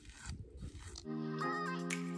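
Faint scraping and rustling of a comb pulled through hair for about a second, then background music with sustained synth chords comes in suddenly and carries on.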